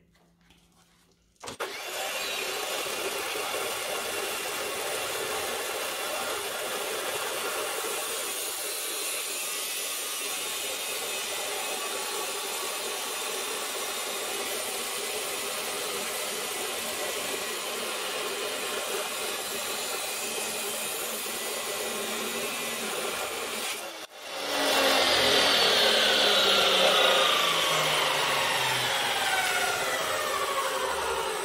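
DeWalt abrasive chop saw cutting through rectangular steel tube: a steady grinding starts about a second and a half in and holds for over twenty seconds. After a sharp break it returns louder, with a whine falling slowly in pitch over the last few seconds as the wheel spins down.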